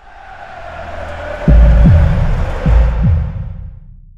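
Logo sting for an outro: a swelling whoosh that builds over the first second and a half, then two double thumps of deep bass, before it fades out at the end.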